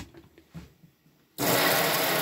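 A caravan's electric water pump starts suddenly about one and a half seconds in as the sink tap is opened, running with a steady buzzing hum under the rush of water from the tap. A few faint clicks come before it.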